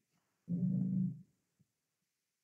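A short, steady, low hummed "mm" from a person's closed mouth, lasting under a second, with a faint tick after it.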